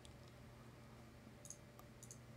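Near silence with a faint steady hum, broken by two faint computer mouse clicks about one and a half seconds in.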